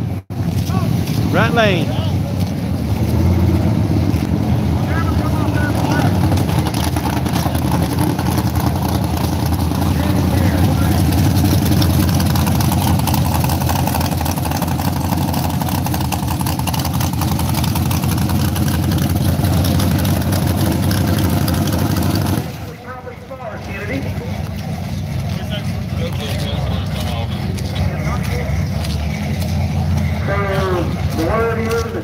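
Drag car engine running close by, a steady loud low rumble, with people talking. The sound drops away briefly about three quarters of the way through, then picks up again.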